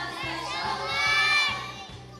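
A large group of preschool children singing loudly together, close to shouting, over a recorded backing track with a steady beat; the voices peak about a second in.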